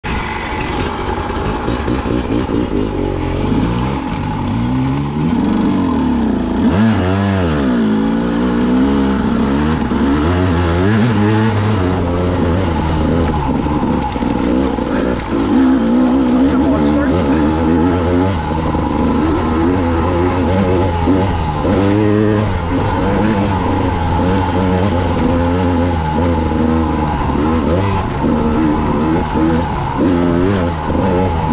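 Two-stroke engine of a 2016 KTM EXC 200 enduro bike, heard up close as it is ridden, its pitch rising and falling over and over as the throttle is opened and closed.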